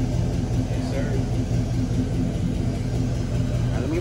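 Chevrolet Caprice Brougham's engine idling with a steady, pulsing low rumble through its exhaust, which is only loud once it gets gas.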